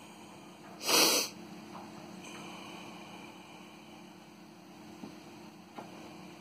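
A single sharp sneeze about a second in, over a steady low hum, with two faint knocks near the end.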